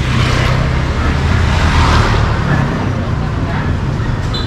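Motor scooter passing close by: a steady low engine hum with a rush of noise that builds to about two seconds in and then eases off.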